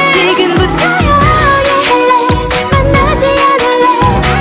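K-pop song: a woman's lead vocal sung over a pop backing track.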